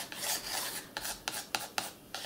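Wooden pencil scratching across a white-gessoed art journal page in short sketching strokes, several separate scrapes with small gaps between them.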